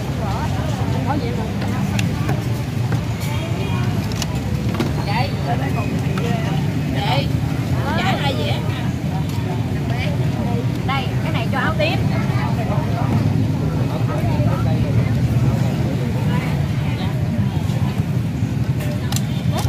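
Street ambience: several people talking at once over a steady low rumble, with a few light clicks.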